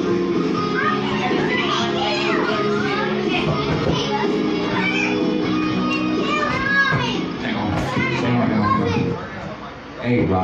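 A karaoke backing track playing through a PA with party guests chattering and calling out over it; the music drops away about nine seconds in.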